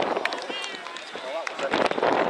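Spectators on the touchline shouting as a rugby league player breaks clear toward the try line, the shouting getting louder and fuller near the end.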